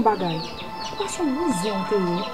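Fowl clucking and small birds chirping in the background, repeated short calls, over a woman's low talking voice.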